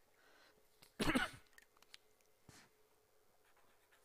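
A man coughs once, briefly, about a second in, followed by faint marker-on-paper ticks as writing begins.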